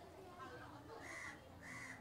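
Two faint bird calls in the background, one about a second in and one near the end, each short and on a similar pitch.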